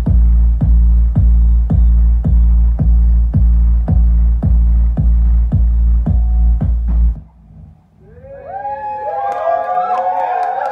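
Electronic dance track over a tent PA, with a heavy kick drum on an even beat a little under two a second over deep bass, cutting off suddenly about seven seconds in. After a brief lull, a crowd breaks into whoops and cheers near the end.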